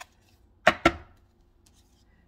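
Two sharp taps about two-thirds of a second in, a fraction of a second apart, from a tarot deck being handled and squared in the hands.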